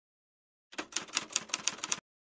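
Typewriter keystroke sound effect: a quick, even run of about ten key strikes starting just under a second in, typing out the title.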